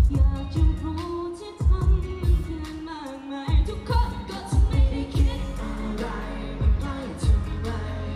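A live pop song through the stage PA: singing over a backing track with low drum beats recurring throughout.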